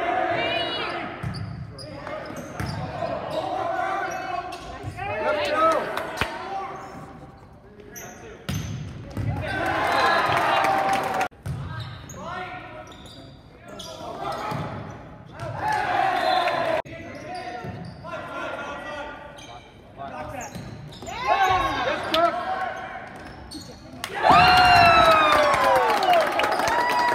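Indoor volleyball rally in a reverberant gym: the ball being struck again and again, sneakers squeaking on the hardwood floor, and players calling out. Near the end the team breaks into loud shouting and cheering as they huddle after the point.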